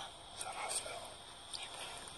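Two people whispering too softly for the words to be made out, in short breathy phrases about half a second in and again near the end, over a steady hiss.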